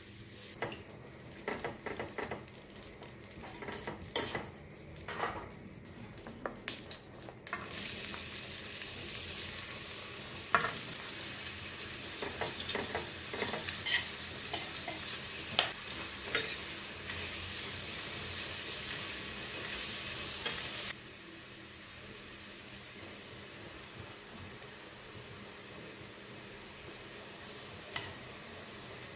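A spatula stirring and scraping melting butter in a stainless steel frying pan. About eight seconds in, a loud sizzle starts as sliced onions fry in the hot butter, with sharp clicks of utensils against the metal. Near 21 seconds the sizzle drops suddenly to a quieter hiss.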